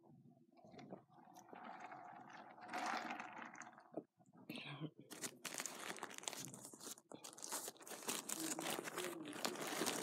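Paper burger wrapper being unwrapped and crinkled by hand. It rustles irregularly at first and becomes a dense crackle about halfway through.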